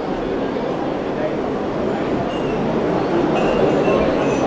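Crowd noise in a hall: a steady, even murmur of many people, with no single voice standing out.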